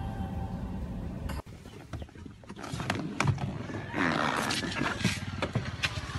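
Music with held tones cuts off abruptly about a second and a half in. After that, wind rumbles and buffets on a handheld phone's microphone, with scattered handling knocks and a louder gust near the middle.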